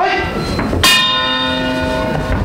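A single struck bell, the cage fight's round bell, rung once about a second in and left ringing on with a sustained metallic tone, signalling the start of the fighting.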